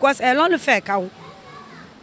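A woman speaking briefly, then a pause in which faint children's voices can be heard in the background.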